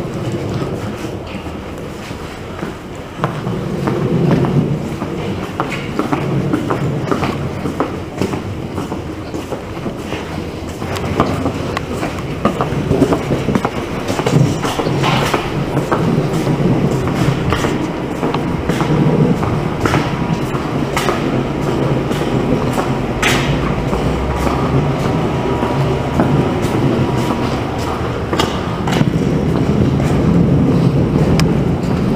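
Steady rumbling noise with frequent small clicks and knocks throughout: footsteps and handling noise from a handheld camera carried while walking.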